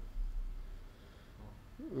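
Low steady hum in a pause between speech, with a man's voice starting right at the end.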